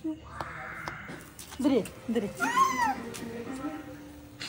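People's voices, with a short hiss near the start and one high squeal that rises and falls about two and a half seconds in.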